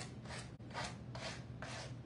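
Sandpaper block rubbed along the edges of a small decoupaged wooden pallet in a series of short scraping strokes, about two a second, distressing the napkin edges.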